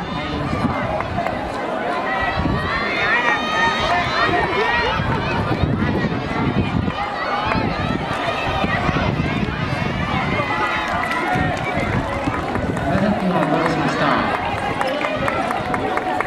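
A crowd of students shouting and cheering, many high voices overlapping at once.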